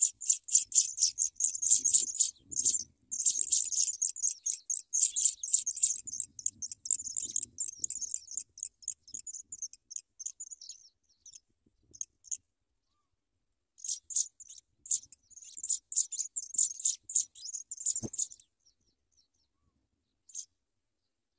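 African pipit nestlings giving high, rapid begging calls in quick runs, the first for about ten seconds, then after a short lull a second run. A single sharp click sounds near the end.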